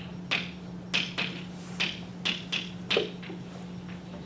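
Chalk tapping against a blackboard as words are written: a quick, irregular series of sharp taps, roughly two a second, over a steady low hum.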